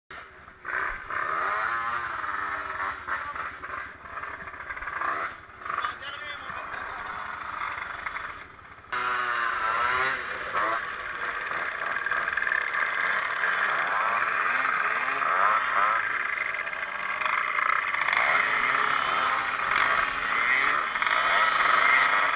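A pack of small Kymco 50cc scooter engines running and revving together at a race start, a dense high buzz with many pitches rising and falling at once. The sound changes abruptly about nine seconds in.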